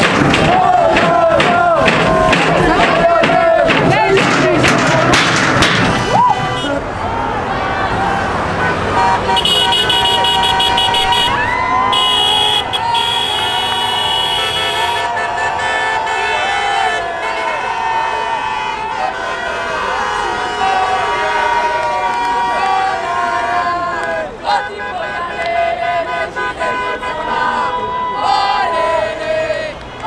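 Vehicles in a protest convoy sounding car and truck horns, several held as long steady blasts about ten to fifteen seconds in, while a crowd shouts and cheers, loudest in the first few seconds.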